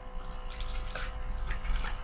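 Hands handling a small cosmetics package: a few light clicks and rustles.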